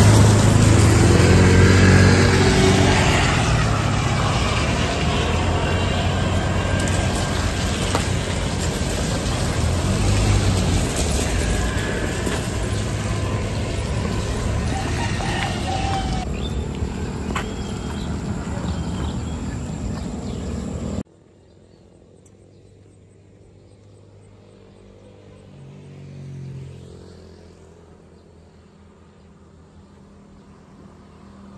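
Road traffic noise beside a highway, loud and steady for about twenty seconds, then cutting off suddenly to a quiet background. A single vehicle passes faintly near the end.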